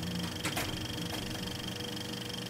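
Electronic transition sting of a news-show logo bumper: a dense, steady sound of held tones, with one sharp click about half a second in.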